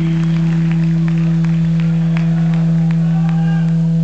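Steady low electric drone from the punk band's stage amplification as a song ends, held unchanged throughout, with a few sharp clicks scattered through it.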